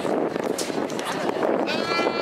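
Spectators chattering, then a high-pitched, drawn-out cheering yell from a spectator starting near the end.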